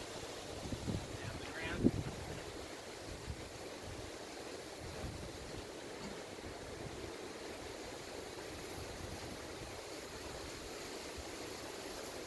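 Steady outdoor background noise like wind on the microphone. In the first two seconds there are a few low thumps and rustles, the loudest about two seconds in.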